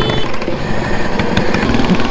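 Small engine of a modified riding lawn mower running steadily under throttle as the mower drives along at speed.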